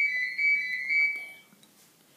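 A single steady high-pitched whistling tone that wavers slightly in loudness about twice a second and fades out about a second and a half in.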